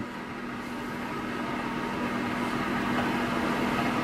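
A steady mechanical hum with one held low tone, growing slightly louder throughout.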